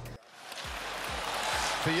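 Hockey arena crowd noise from a game broadcast, swelling up steadily after a brief silence, with low thumps of background music beneath it; a man's voice begins near the end.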